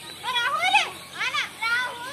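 A child's high-pitched, wordless calls: about three short cries in quick succession, each rising and then falling in pitch.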